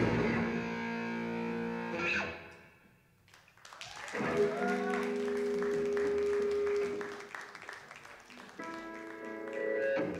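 Electric guitars playing live through amplifiers, without drums. Held chords ring out and fade away about three seconds in; then a note bends up and is held, and another chord comes in near the end.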